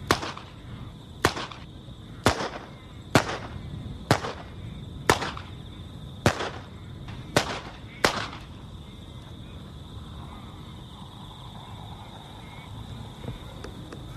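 Revolver shots fired one at a time at a steady pace, nine shots about a second apart, the last about eight seconds in.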